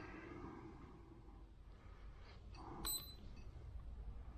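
A rifle trigger being tested with a trigger pull gauge: quiet handling, then a single sharp click with a brief high ring about three seconds in.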